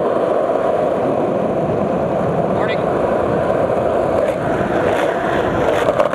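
Skateboard wheels rolling steadily over asphalt, a continuous even rolling noise.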